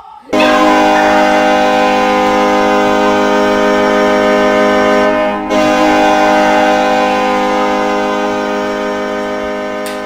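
Hockey goal horn sounding one long, steady chord with a brief break about halfway through, marking a goal just scored.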